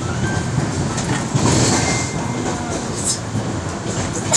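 Inside a passenger train coach running at speed: a steady rumble of wheels on the track, with a few sharp clicks from the rails.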